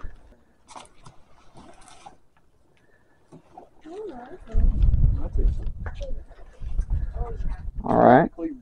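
People lifting and unfolding a folding rooftop tent: scattered clicks and knocks of handling, then from about halfway low rumbling effort noise with wordless vocal sounds, like grunts of strain.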